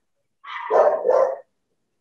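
A dog barking in a short burst, about a second long, starting about half a second in.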